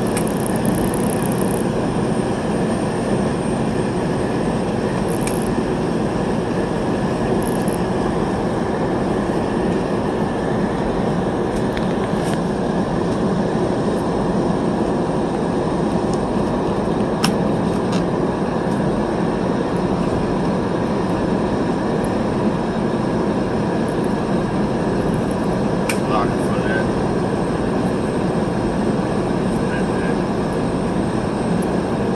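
Steady rumbling noise of a moving vehicle, with a few faint clicks.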